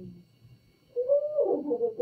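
A woman's voice making a drawn-out, sing-song sound with no clear words, starting about a second in, rising in pitch and then falling away.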